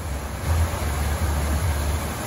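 Steady rushing of water pumped over a sheet-wave surf simulator, with a low rumble underneath.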